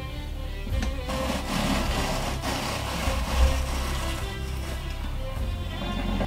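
Hand-cranked apple peeler-corer-slicer being turned, a steady rasping as the blade shaves the peel and the slicer cuts through the apple, under background music.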